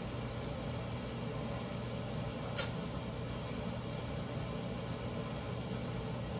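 A steady low hum, as from a running kitchen appliance or ventilation, with one short click about two and a half seconds in.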